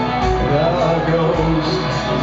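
Live hard rock band playing loud, heard from the crowd: distorted electric guitar, bass and drums under a male lead vocal, with a low drum thump about once a second.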